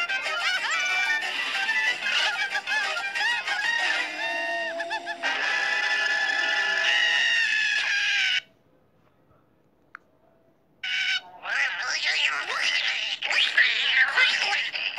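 Cartoon background music, which cuts off suddenly about eight seconds in. After about two seconds of near silence, cartoon voices cry out and scream.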